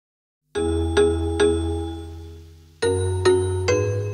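Instrumental karaoke backing track in G-sharp minor: after half a second of silence, ringing chords over a bass note are struck three times about half a second apart and fade away, then three more strikes begin near the end.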